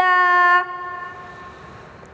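A girl's voice holding the long final note of a Quran verse in melodic recitation (tilawah), steady in pitch. It breaks off about half a second in and leaves a fading tail.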